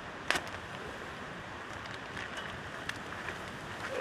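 Quiet, steady outdoor background noise with one light knock shortly after the start and a few faint ticks after it.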